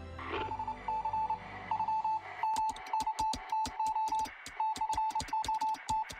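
Morse code signal: a single beeping tone near 1 kHz keyed in short and long pulses of dots and dashes. About two and a half seconds in, a rapid, irregular run of sharp clicks joins it. Low soundtrack music sits underneath at first.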